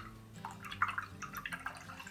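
Watercolour brush being rinsed in a jar of water: a run of small drips and light splashes, busiest in the middle of the clip.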